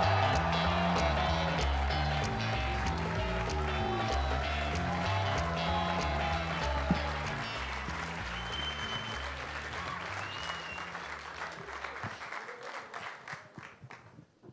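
Walk-on music with a bass line stepping between notes, playing over audience applause. Both fade gradually: the music stops a couple of seconds before the end, and the clapping thins out to a few scattered claps.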